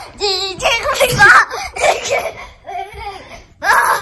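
A young boy laughing and shrieking in silly play, in a run of loud pitched bursts, with a quick pulsing laugh near the start.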